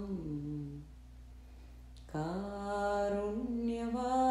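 A single voice singing a slow devotional chant on long held notes. A note slides down and fades within the first second, and after a short lull a new note starts about two seconds in, rising slightly and then held.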